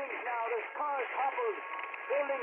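A voice talking in quick, rising-and-falling phrases, thin and narrow-band like sound played through a radio or an old TV speaker.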